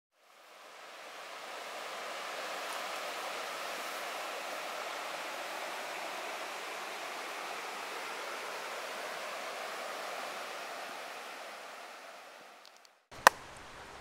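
A shallow creek's water running over stones as a steady rush, fading in over the first couple of seconds and fading out near the end, followed by one sharp click.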